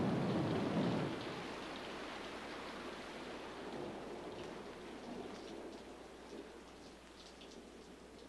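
A low rumble for about the first second, then a steady rain-like hiss that slowly fades, with faint light ticks near the end.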